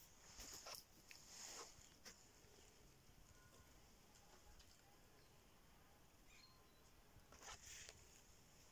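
Near silence: faint outdoor ambience with a few brief, soft rustles.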